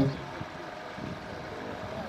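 A pause in a man's spoken narration, his last word cutting off at the very start, leaving faint, steady background noise with no distinct source.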